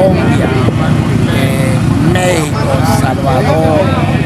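A man talking over a steady low rumble of motorcycle engines running in the background.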